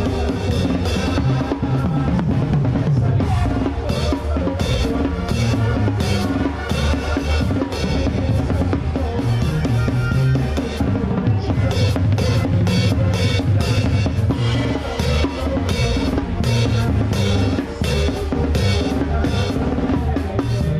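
Banda brass band playing live, heard from right at the drum kit: busy snare, tom, bass-drum and cymbal strokes up front over a sousaphone bass line and trumpets and trombones.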